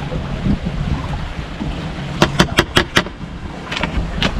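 Wind buffeting the microphone, a steady low rumble. A quick run of about five sharp clicks comes a little after two seconds in, and a few more near the end.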